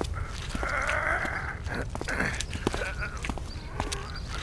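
A man's pained, wavering moan, one longer cry followed by several shorter ones.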